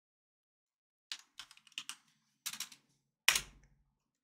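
Computer keyboard being typed on in a few short bursts of key clicks, ending about three seconds in with one louder key press that carries a low thud.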